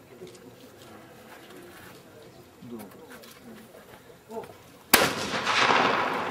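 A single shotgun shot in trap shooting about five seconds in, sharp and loud, followed by a wash of noise that fades over about a second and a half; the clay target is hit and breaks into a puff of dust. Faint voices murmur before the shot.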